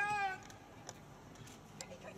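A short, high-pitched shout that rises and then holds for under half a second at the start, followed by low open-field background with a few faint knocks.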